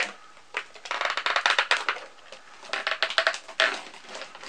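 Clear plastic packaging crackling and clicking as small figures are worked loose from a tight-fitting display box. It comes in two bursts, one about a second in and another around three seconds.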